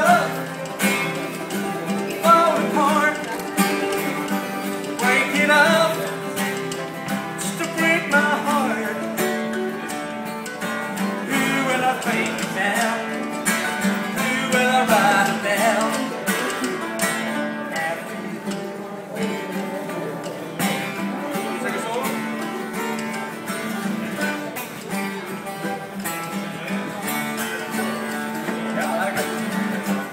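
Instrumental break of an acoustic folk song: a mandolin plays the melody over strummed acoustic guitars, with a steady clicking rhythm from spoons.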